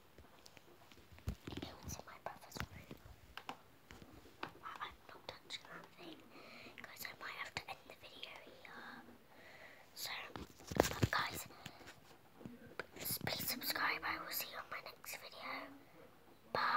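A girl whispering close to the microphone, with a louder thump about eleven seconds in.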